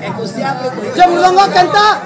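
A man's amplified voice reciting a kirtan verse in a sing-song delivery, with pitches held and bent between phrases and no drumming.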